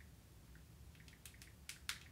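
Near silence with scattered faint ticks of fingernails tapping on a phone's touchscreen, the loudest two near the end.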